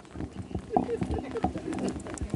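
A quick, uneven run of sharp clicks and knocks from arrows being shot at a bundled reed archery target and striking in and around it, with faint voices behind.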